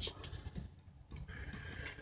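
Faint ticks and clicks of hands handling a 3D printer's gantry assembly: a few light ticks at first and a sharper click a little over a second in.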